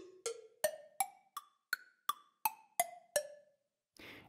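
Sampled cowbell struck about three times a second, each hit ringing briefly. It is being retuned in semitone steps, so the pitch climbs from hit to hit over the first half and comes back down over the last few hits.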